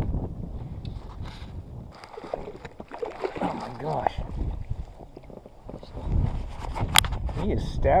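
Low wind rumble on the microphone and water around a small inflatable boat as a landing net is worked in the lake, with faint voices and a sharp knock about seven seconds in.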